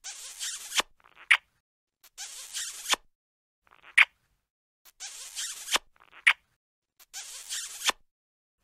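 Cartoon kissing sound effect played over and over: a smooching sound just under a second long, then a sharp lip-smack pop. The pair repeats about every two and a half seconds, three to four times.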